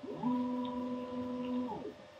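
Mecpow X4 Pro diode laser engraver's stepper motors whining as the gantry makes a fast move across the work area. The pitch rises as it speeds up just after the start, holds steady, and falls away as it slows near the end.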